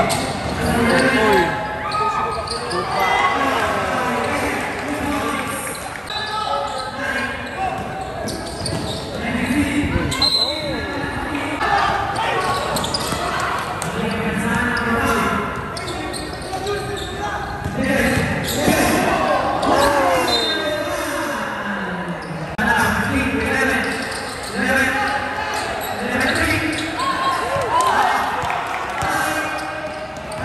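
Sounds of a live basketball game in a large gym: the ball bouncing on the hardwood court, with voices calling and shouting throughout.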